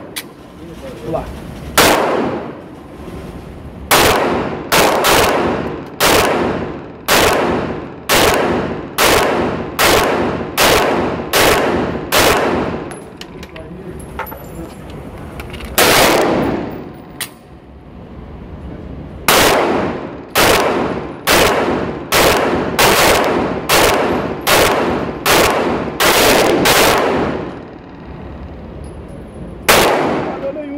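Taurus PT111 G2 9mm pistol fired in quick strings of roughly two shots a second, about thirty shots in all, with a short pause in the middle. Each shot echoes in an indoor range. The pistol keeps cycling though it has not been cleaned after more than 400 rounds.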